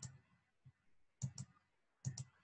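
Computer mouse clicking in a near-silent room: a pair of clicks at the start, and another close pair about a second and a quarter in.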